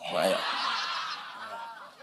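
Audience laughter, a mix of many chuckles that fades away gradually.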